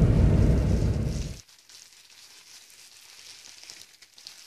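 Car cabin noise while driving, a loud low rumble that cuts off abruptly about one and a half seconds in. After the cut there is only a faint crackling, such as a hand working hair dye through wet hair.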